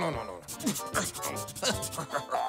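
Quick scratchy strokes of an eraser rubbing over paper, a cartoon erasing sound effect, in a short burst with light music underneath.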